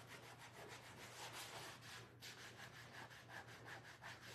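Applicator pad rubbing leather conditioner into a leather chair in quick back-and-forth strokes, faint, with a short pause about halfway.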